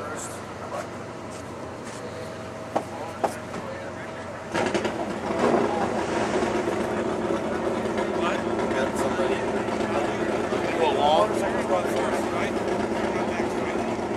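An engine starts suddenly about four and a half seconds in and keeps running steadily. Before it, two sharp clicks; voices talk in the background.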